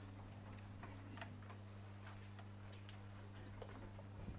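Faint, steady low electrical hum with sparse, irregular light ticks, about two a second.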